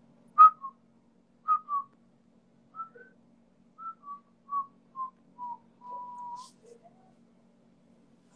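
A man whistling a little tune through pursed lips: a string of short notes that drift gradually lower in pitch, ending on a longer held note about six seconds in.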